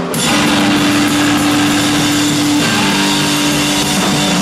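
Live rock band at full volume: electric guitar and drum kit playing together, the whole band coming in right at the start. A guitar note rings out held for about two seconds before the part changes.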